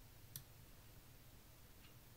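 Near silence with a low hum, broken by one short, sharp click about a third of a second in and a much fainter click near the end.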